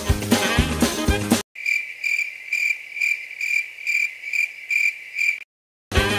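Background music stops abruptly about a second and a half in. Crickets chirp in its place, about two chirps a second, as a comic 'awkward silence' sound effect. The chirping cuts off shortly before the music returns at the end.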